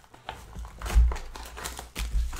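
Cardboard box of 2018 Contenders Optic football card packs being opened by hand, its foil-wrapped packs crinkling as they are handled, with a thump about a second in.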